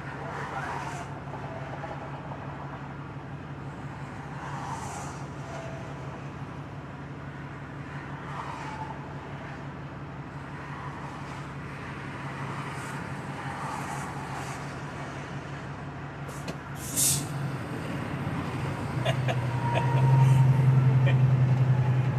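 Semi truck's diesel engine idling, heard inside the cab. About 17 seconds in there is a short, sharp hiss of air as the brakes are released. The engine then gets louder as the truck pulls away near the end.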